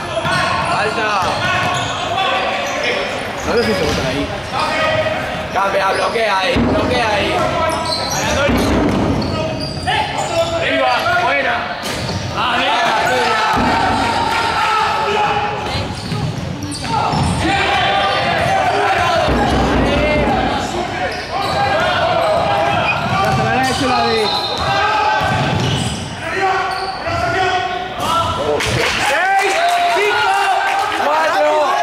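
Basketball bouncing on a hardwood court during play, with voices and shouts from players and spectators throughout, echoing in a large sports hall.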